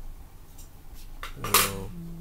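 A person's short vocal sound, a voiced grunt or hum with a breathy burst, about one and a half seconds in, preceded by a few faint light clicks.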